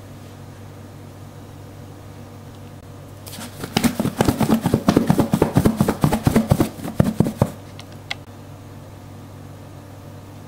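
Chicken breast pieces being shaken in a lidded plastic container of dry batter mix: a rapid, loud run of thuds and rattles for about four seconds, starting about three seconds in, over a faint steady low hum.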